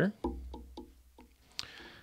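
A short musical sting of about six quick plucked-string notes, each dying away, in the first second, followed by a brief soft hiss near the end.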